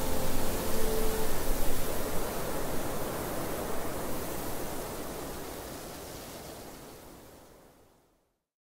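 Steady rushing wind, an even hiss across all pitches that fades gradually to silence by the end.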